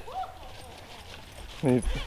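A dog giving a short whine that rises and then falls, right at the start, followed by a man's voice near the end.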